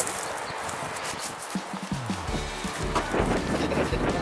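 Footsteps on gravel, then background music comes in about halfway through.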